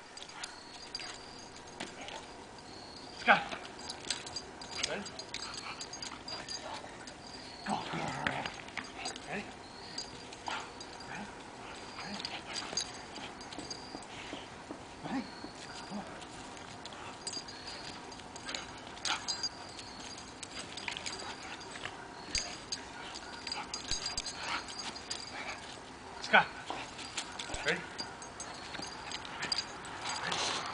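American bulldog making short, scattered vocal sounds during rough play with a toy.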